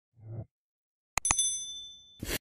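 A short, soft low thud, then two sharp clicks followed by a bright bell-like ding that rings out and fades in under a second: the 'like' sound effect of an animated like-button graphic.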